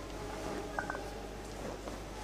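Two light, short metallic clinks of altar vessels being handled, over a steady low electrical hum.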